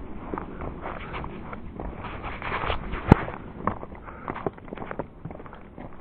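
Footsteps crunching and knocking on a rocky, gravelly hiking trail in an irregular walking rhythm, with one sharp click about three seconds in.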